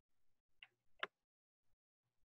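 Near silence in a pause between speech, broken by two faint short clicks, the first about half a second in and the second, sharper one about a second in.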